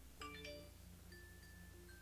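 Faint background music: a cluster of chime-like bell notes about a fifth of a second in, then soft held tones over a low hum.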